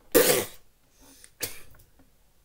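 A man coughs once, harshly, then gives a shorter, fainter cough about a second later.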